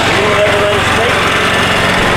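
Small petrol engine of a golf cart running close by, a steady buzz.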